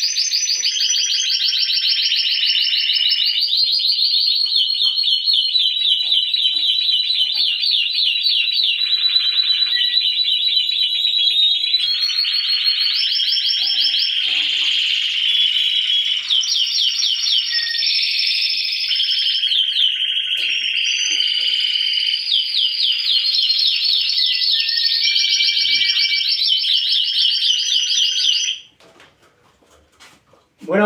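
Spanish timbrado canaries singing in their cages: an unbroken run of rapid, rolling trills and repeated-note phrases that change every second or two. The song breaks off near the end.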